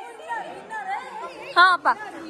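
Several people talking over one another, with a loud high-pitched call twice about one and a half seconds in.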